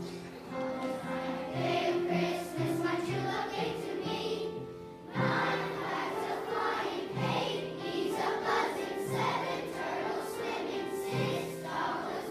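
Children's choir singing in unison with upright piano accompaniment, with a short break about five seconds in before the next phrase starts.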